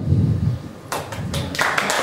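A few hand claps about a second in, quickly building into steady applause from a congregation.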